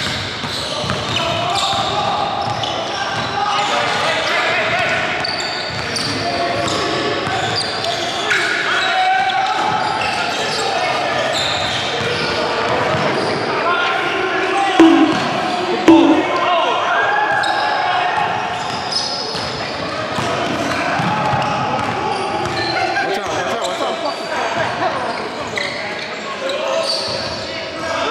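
Pickup basketball game in a reverberant gym: players' voices call out over a basketball bouncing on a hardwood floor. Two sudden loud sounds come about halfway through.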